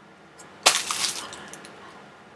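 Plastic wrapping crinkling as a hand grips the plastic-wrapped rolled canvas of a diamond-painting kit. It starts suddenly a little over half a second in and dies away over about a second, with a few small crackles after.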